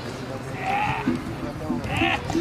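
Indistinct background voices, with a short low tone repeating evenly from about a second in.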